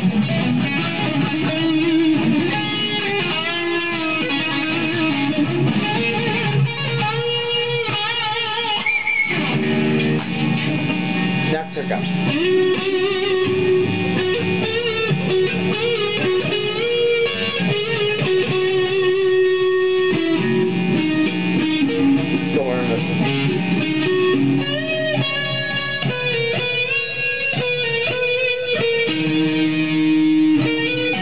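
2007 Mexican-made Fender Lone Star Stratocaster, an electric guitar, played through an amplifier with a distorted tone. It plays lead lines with held notes that waver in pitch, over lower riffing.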